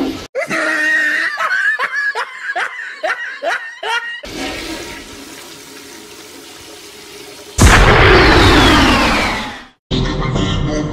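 Cartoon sound effects: a rhythmic laugh-like voice for about four seconds, then a steady rushing like a toilet flush as the toilet's head goes down the bowl. A louder rushing burst with a falling whistle comes near the end and fades out.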